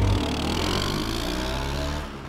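Motor scooter engine running as the scooter pulls away, loudest at first and fading over the two seconds.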